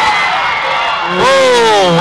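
Football crowd noise, then about a second in a single long, drawn-out vocal shout that slowly falls in pitch, reacting to a long kick in flight.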